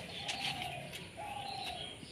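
Birds calling: two drawn-out low cooing notes one after the other, each falling slightly, with scattered high chirps.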